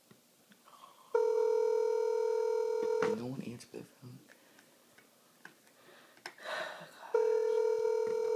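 Telephone ringback tone through a cell phone's speaker: the line ringing at the called number, two rings of about two seconds each, about six seconds apart.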